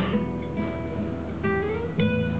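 Solo acoustic guitar playing, no voice: a chord struck at the start, single plucked notes ringing, one note sliding up in pitch about a second and a half in, and another chord struck at the end.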